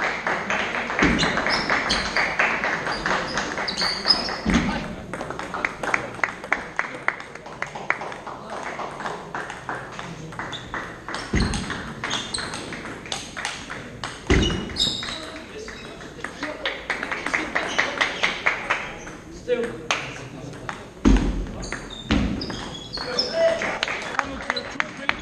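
Table tennis ball clicking off bats and table in fast rallies, over the murmur of voices in a sports hall, with a few low thuds from the players' footwork.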